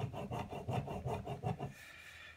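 Pen scratching on lined paper in quick back-and-forth strokes as a heavy line is drawn over and over, stopping near the end.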